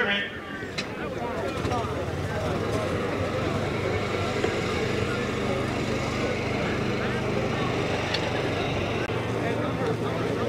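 Crowd chatter from spectators at a football game: many voices talking at once in a steady murmur, over a steady low hum.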